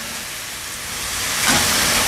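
Genjer greens sizzling as they stir-fry in a wok over a gas burner: a steady hiss that grows louder in the second half.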